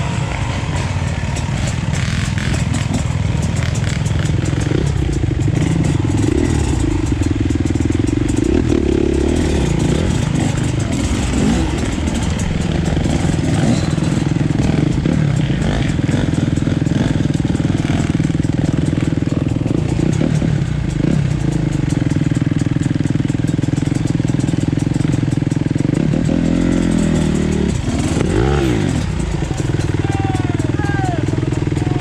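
Dirt bike engine running steadily at low revs over rough trail, with a few brief rises in pitch as the throttle is opened.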